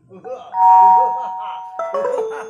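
Loud chime-like ringing tones. A high two-note chord strikes about half a second in and fades away over about a second, then a lower set of notes sounds near the end, with stage voices beneath.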